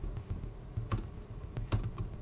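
Typing on a computer keyboard: a run of key clicks, with two sharper clicks about a second in and near the end.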